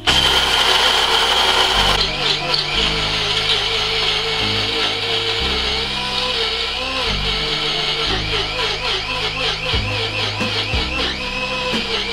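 Electric coffee grinder running continuously under load, grinding activated-carbon granules to a very fine powder; its motor whine wavers in pitch throughout.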